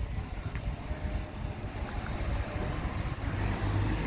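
Low, uneven outdoor rumble of town ambience.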